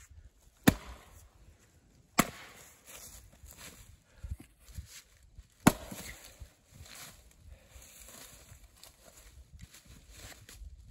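Axe splitting firewood rounds: three sharp chops, the first two about a second and a half apart and the third about three and a half seconds later, with a few lighter knocks between them.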